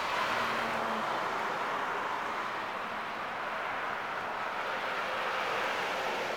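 Steady rush of road traffic, with a short low hum in the first second.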